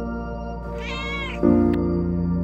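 A domestic cat's single meow, about a second long, rising and then falling in pitch, over soft ambient music. A louder chord in the music comes in partway through the meow.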